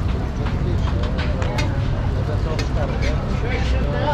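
Busy street ambience: several people talking in the background over a steady low rumble of traffic, with a few sharp clicks and taps.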